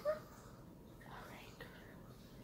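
The end of a spoken word right at the start, then a quiet room with a faint whispered voice a little past a second in.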